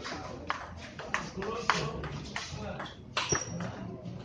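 Table tennis ball clicking sharply off paddles and the table in a short rally, about six taps roughly half a second apart, with voices talking in the background.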